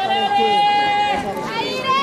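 Two long, drawn-out shouted calls from a voice, each held on one pitch, the second higher than the first and starting near the end: spectators yelling encouragement at passing inline speed skaters.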